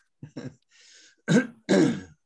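A person clearing their throat: a couple of small sounds and a breath, then two loud short rasps in the second half.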